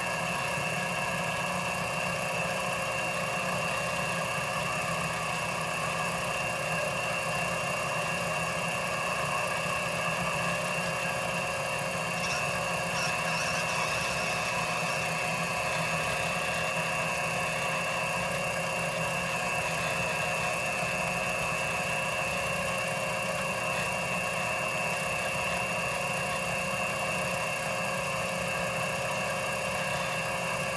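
Small benchtop metal lathe running steadily while it turns down a Delrin rod, giving a constant whine with a strong high tone.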